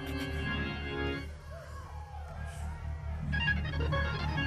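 Church organ playing held chords over a low bass that pulses about four times a second, with a new chord coming in a little after three seconds.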